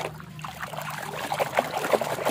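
Muddy water sloshing and splashing in a basin as it is stirred by hand to wash mud off toys: a run of quick, irregular splashes.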